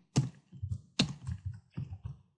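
Typing on a computer keyboard: an uneven run of about seven keystrokes.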